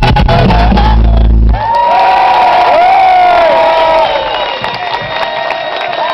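Folk band with fiddle, bagpipe, accordion and drums ending a tune on a loud held final chord that cuts off about a second and a half in. Then the audience cheers, with whoops.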